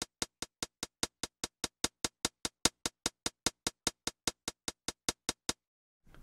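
A soloed electronic drum-machine hi-hat from the Electro sample instrument plays a steady run of short, even ticks, about five a second, and stops about half a second before the end. Each hit is panned to a different place left or right by the spread lane.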